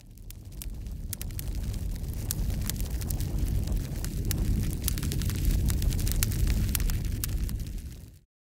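Fire burning: a steady low roar with many sharp crackles and pops throughout. It builds up over the first second or two.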